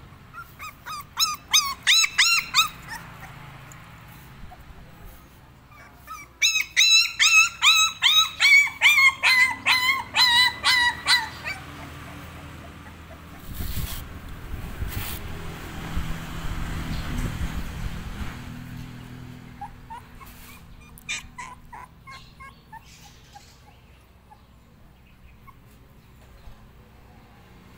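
Young puppy whimpering and yelping in short high-pitched cries: a brief run about a second in, then a longer run of about three cries a second. A low rumbling noise follows midway, then a few fainter whimpers.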